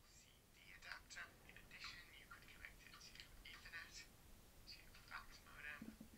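A voice from a video playing back faintly through the Sony VAIO P11Z's small built-in laptop speakers. It sounds thin, with no bass.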